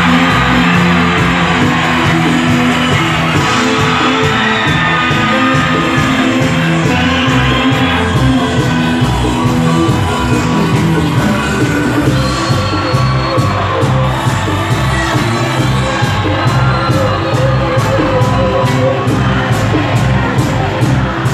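A live band playing through the hall's PA: keyboard, bass, drum kit and hand percussion in a steady dance rhythm, with a quick, even percussion tick in the second half.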